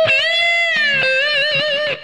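Stratocaster-style electric guitar playing a single held lead note: picked bent up at the start, let down about a second in, then shaken with wide vibrato until it stops just before the end.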